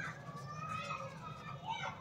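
Faint, distant high-pitched calls that glide up and down in pitch, over quiet room tone.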